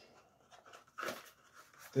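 Faint handling sounds of a small cardboard box and its packaging as the ESC is slid out, with one brief, slightly louder short sound about a second in.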